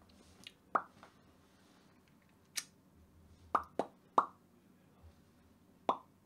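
About six short, sharp pops at irregular intervals, three of them close together a little past the middle.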